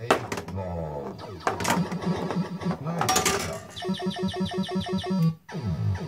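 Pinball machine in play: sharp clicks and knocks, then a rapid run of repeated electronic beeps, about six a second, for a second and a half near the end, stopping abruptly.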